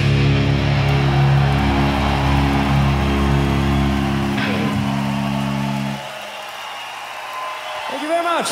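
Live metal band holding its final chord on electric guitars and bass, which stops suddenly about six seconds in. A crowd cheers after it.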